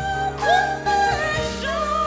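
Gospel singing with instrumental accompaniment: a voice holds long, wavering notes and slides between pitches over steady chords and bass.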